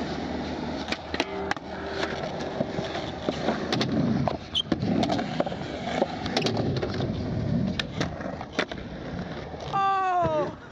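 Skateboard wheels rolling on concrete, with several sharp clacks of the board against the ground.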